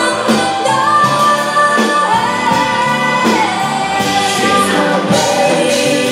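A woman singing into a microphone with a live pop band of drums and bass guitar behind her, holding long sung notes over a steady beat.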